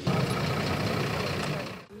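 An engine running steadily, a dense even noise that cuts off abruptly shortly before the end, with crowd voices faintly mixed in.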